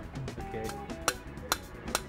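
Claw hammer tapping the top of a copper pipe to drive it into the ground: three sharp metallic strikes about half a second apart, the last the loudest.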